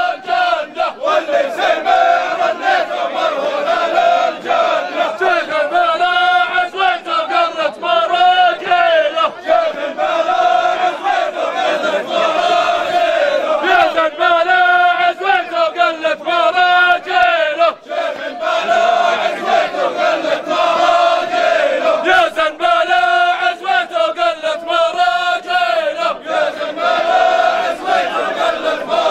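A group of men chanting loudly together in unison in repeated, shouted phrases: a men's folk chant.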